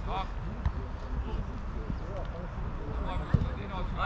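Faint shouts and voices of players across a youth football pitch, with one sharp thud of the ball being kicked a little over three seconds in, over a steady low rumble.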